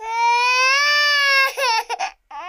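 A baby crying: one long wail lasting about a second and a half, then a few short broken sobs near the end.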